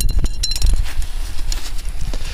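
Wind rumbling on the microphone, with a few light clinks in the first second as the tent poles in the torn tent bag are handled.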